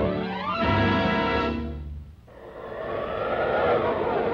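Orchestral fanfare from a 1940s cartoon soundtrack, a held chord that swells and ends a little under two seconds in. After a brief dip, a rushing sound with a sweeping tone swells up.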